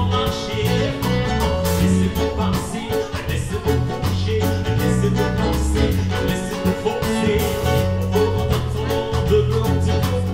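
Live band playing an upbeat song with a lead singer, heard through a Bose L1 line-array PA: bass notes and regular drum strokes carry a steady beat under guitar, keyboard and vocals.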